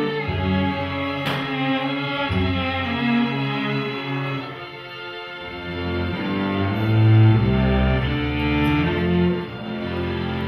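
A string orchestra of violins and cellos playing held, bowed notes, dipping softer about five seconds in and then swelling to its loudest about seven seconds in.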